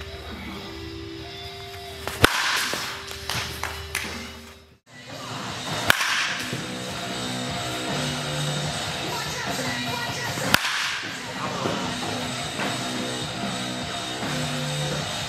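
Three sharp cracks of a baseball bat striking pitched balls: one about two seconds in, one about six seconds in, and one near ten and a half seconds. The first lands over a steady hum. The other two come after a brief drop-out, with background music playing under them.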